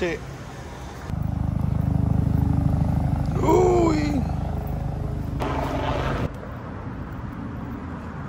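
A low, steady engine rumble starts suddenly about a second in and cuts off abruptly just after six seconds, with a brief spoken phrase over it midway.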